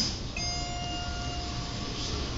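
Schindler elevator hall lantern sounding a single electronic chime tone that fades away over about a second, signalling the car's arrival at the landing.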